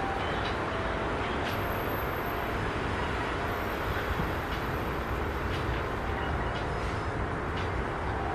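Steady outdoor ambient noise at an open-air stadium, with a fluttering low rumble underneath and a few faint distant ticks and tones.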